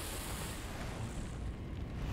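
A trail of fire rushing along the ground and flaring up: a steady rushing noise, with a high hiss that fades out about a second in.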